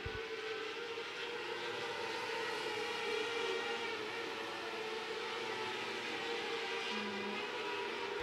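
The 600cc motorcycle engines of a pack of micro-sprint race cars running flat out together, a steady, even whine.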